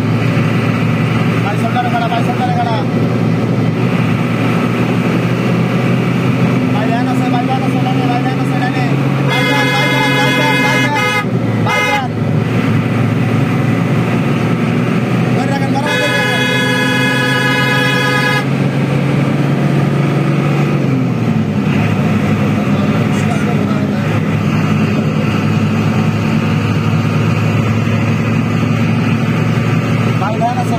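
Bus engine droning steadily at speed, with loud horn blasts: one about nine seconds in that breaks off and sounds again, and a second blast of about two seconds around sixteen seconds in. About twenty seconds in, the engine note drops as the throttle eases.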